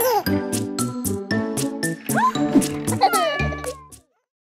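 A cartoon cat meowing a few times over an upbeat children's song with bass and percussion. The music fades out at the end.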